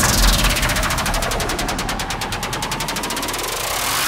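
Electronic dance-music transition: a fast, even roll of drum hits with a sweep that falls in pitch and then rises again, without the beat and bass, building into the next track.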